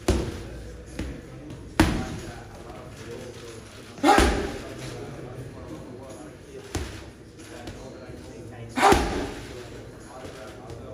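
Gloved hooks landing on a heavy bag: about six sharp thuds, the hardest about two, four and nine seconds in, each echoing briefly in a large room.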